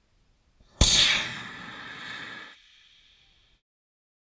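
Two-stage amateur rocket's motor igniting with a sudden loud blast about a second in, then the roar of liftoff easing off as the rocket climbs, leaving a fainter high hiss that cuts off abruptly near the end.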